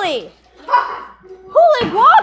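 Two loud, wordless, howl-like calls, each sliding down in pitch, with a short breathy sound between them.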